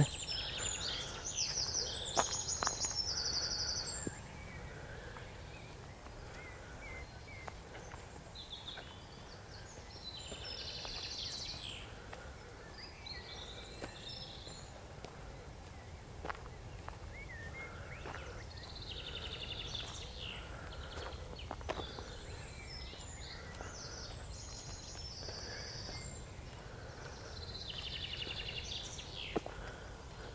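Small birds singing in short, high, trilled phrases every several seconds over quiet outdoor background noise, with a few faint clicks.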